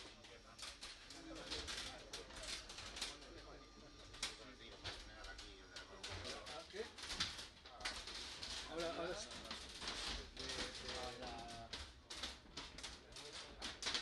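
Faint, indistinct voices of people talking in the background, with many sharp clicks scattered through.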